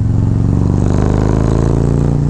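Harley-Davidson Road Glide Special's V-twin engine running steadily while the bike is ridden down the road, heard from the rider's seat.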